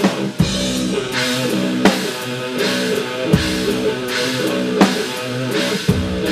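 Drum kit played live along with a backing track that has guitar, a steady groove with loud accents about every one and a half seconds.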